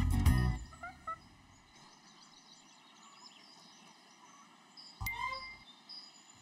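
A music sting ends within the first second, followed by quiet outdoor ambience with faint bird calls; about five seconds in comes a brief, louder bird call.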